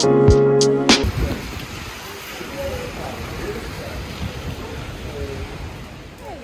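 Intro music with a beat cuts off about a second in, giving way to a steady hiss of rain on a wet city street, with faint voices in the background.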